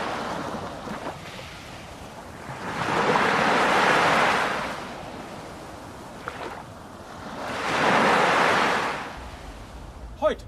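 Ocean surf: waves wash in and draw back. After the tail of one wave, two full swells rise and fall about four and a half seconds apart.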